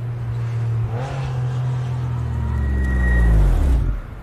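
BMW Z4 roadster's engine running as the car drives up. It revs briefly about a second in, then its note falls steadily in pitch and grows louder as the car slows. The sound cuts off suddenly at the end.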